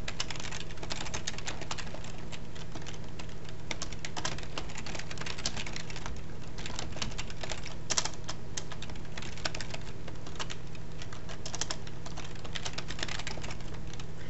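Typing on a computer keyboard: a steady run of irregular key clicks.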